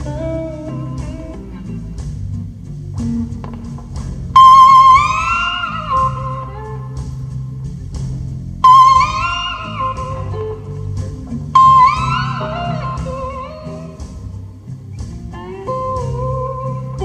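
Electric slide guitar playing a blues solo over bass and drums. It hits three loud, high held notes that slide up in pitch and waver with vibrato, about four seconds apart, with quieter lower phrases between them.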